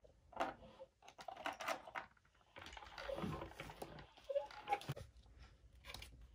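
Scattered light clicks and taps of plastic toy pieces being handled on a toy pirate ship.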